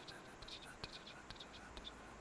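Faint, irregular light clicks over quiet room tone.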